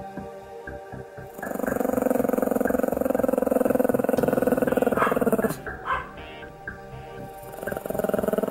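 Pomeranian growling over background music. One long, low growl starts about a second and a half in and breaks off past the middle, and another begins near the end.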